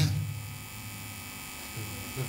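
A spoken word cuts off at the very start, then a steady low electrical mains hum carries on through the pause.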